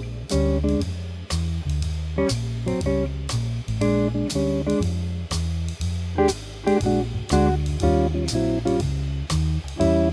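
Archtop electric jazz guitar comping short chord stabs through a jazz blues in B-flat, over a bass and drum backing. The chords slide a half step up or down and back again, building tension and resolving it.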